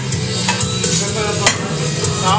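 Music playing over weight-room noise, with a sharp metallic clank about a second and a half in as an iron plate is handled on a barbell sleeve.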